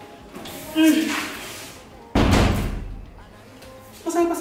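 A wooden door slammed shut once, about two seconds in: a sudden heavy bang that dies away over about a second. A brief voice sound comes just before it.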